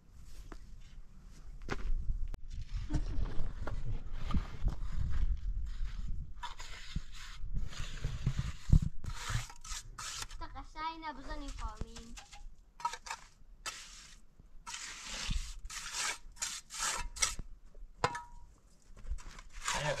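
A trowel scraping and knocking against a metal basin as cement mortar is scooped and worked, in irregular strokes.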